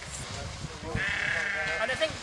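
A single sheep bleat lasting just under a second, starting about a second in.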